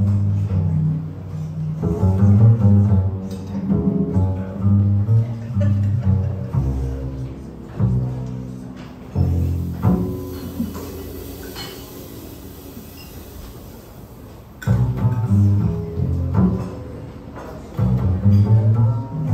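Live small-group jazz led by a plucked upright double bass, with piano and archtop guitar accompanying. About ten seconds in the music thins to a few sparse ringing notes, then picks up fuller again near the end.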